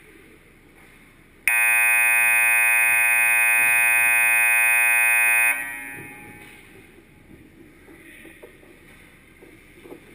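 Ice rink's scoreboard horn sounding one long, steady blast of about four seconds, starting about a second and a half in and cutting off, with the arena's echo fading after it.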